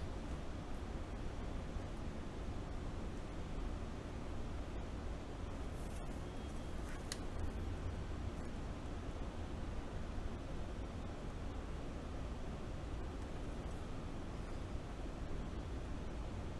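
Steady low hum and hiss of room noise, with one faint tick about seven seconds in.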